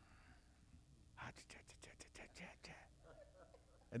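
A faint voice whispering, starting about a second in and lasting about a second and a half; otherwise near silence.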